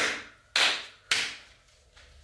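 Three sharp percussive hits about half a second apart, each fading away in a bright hiss.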